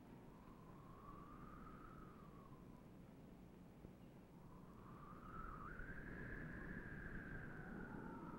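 A faint single whistle-like tone over low background hiss. It glides slowly up and back down in pitch, then rises again about halfway through and sags slowly near the end.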